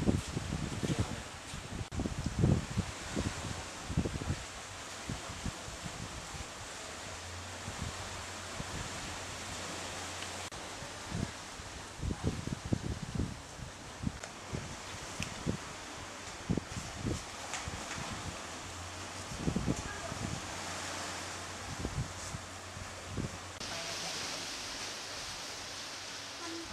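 Outdoor ambience of wind gusting on the microphone over a steady hiss, with indistinct voices in the background.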